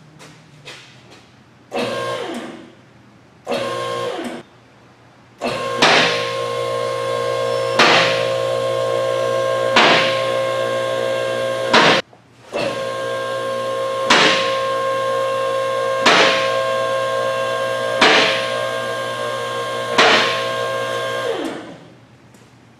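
Two-post vehicle lift's electric hydraulic pump motor running with a steady whine while raising a pickup's cab body off its frame. It gives two short bursts, then runs long, stops briefly midway and runs on, with a louder clack about every two seconds. Each time it cuts off, its pitch winds down.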